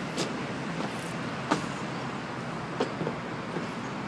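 Steady background hum with a few faint taps, footsteps on the perforated metal steps of a playground slide as a toddler climbs.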